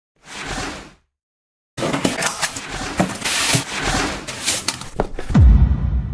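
Edited intro sound effects: a short whoosh in the first second, a moment of silence, then a busy run of sharp hits and swishes. It ends in a loud, deep, falling boom about five and a half seconds in.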